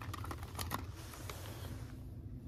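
Light plastic clicks and crackles as a blister-carded screwdriver set is handled and lifted off a display peg hook, mostly in the first second, over a steady low hum.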